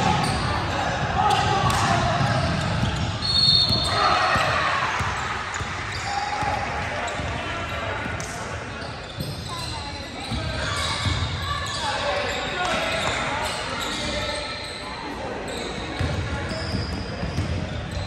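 Basketball game on a hardwood gym court: the ball bouncing, with indistinct shouts and voices of players and spectators echoing in the large hall.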